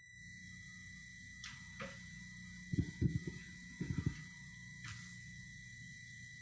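Quiet room tone through a church sound system: a steady hiss and low hum with a faint constant high tone. In the middle come two short clusters of soft low thumps, with a few light clicks scattered around them.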